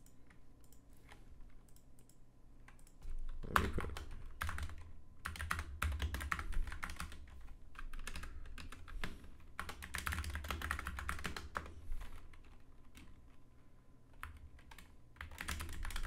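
Typing on a computer keyboard. A few scattered keystrokes at first, then quick runs of key clicks from about three seconds in, thinning out near the end.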